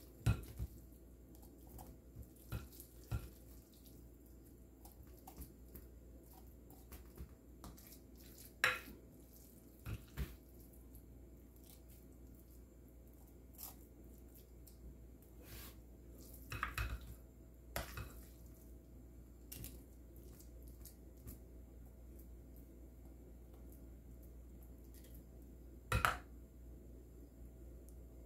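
Spatula scraping and knocking against a glass mixing bowl as ground beef mixture is scooped and packed into a bell pepper: scattered soft clicks and knocks, the loudest about nine seconds in and again near the end, over a faint steady hum.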